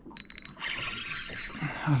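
A few sharp clicks, then the fishing reel's drag buzzing for about a second as the hooked fish pulls line off the spool.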